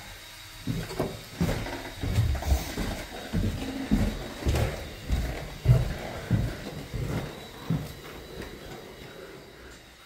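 Footsteps going down a flight of stairs, a regular series of dull thuds about two a second that thin out and fade near the end.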